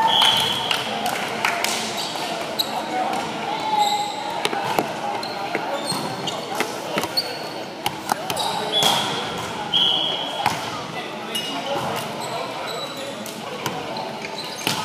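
Volleyball being played on a hardwood gym floor: sharp slaps and thuds of the ball being hit and landing, and short high squeaks of sneakers on the court, echoing in a large hall over players' voices.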